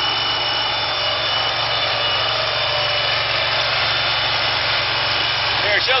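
Engine of a FINN T30 hydroseeder running steadily: a constant engine hum and hiss with a thin, steady high tone over it.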